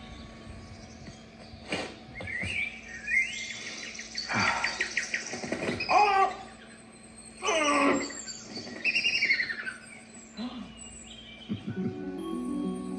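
An animated film's forest soundtrack played through a portable projector's built-in speaker: a series of bird chirps and squeaky, pitch-sliding calls in short bursts, busiest in the middle and latter part.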